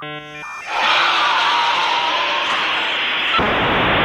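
A loud, harsh, inhuman shriek from a film scene, held for about three seconds and starting a little under a second in; its texture changes shortly before the end. It is preceded by a brief run of steady electronic tones.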